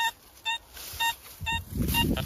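XP Deus metal detector beeping on a buried target as the coil is swept over it: short identical beeps about two a second, a strong signal. A low rustling noise joins near the end.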